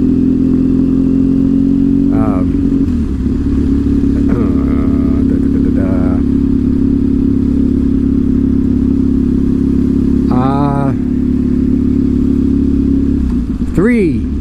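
Triumph Thruxton's parallel-twin engine running steadily while cruising on city streets, its note shifting about three seconds in.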